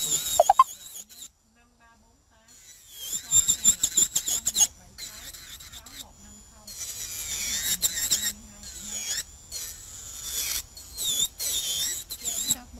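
Electric nail drill with a sanding band bit grinding an acrylic nail, a high squealing whine that dips and rises in pitch as the bit is pressed on the nail. It runs in bursts: it stops about a second in and starts again at about three seconds, then runs more steadily through the second half.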